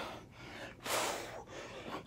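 A man breathing hard during push-ups, with one loud breath about a second in.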